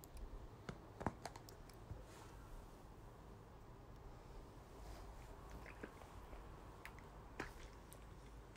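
A spatula stirring and scraping in a pan of frying onions and oil, giving faint, scattered clicks: a few close together about a second in and another near the end.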